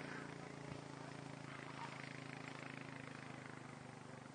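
A vehicle engine idling steadily, a low even hum that fades a little near the end.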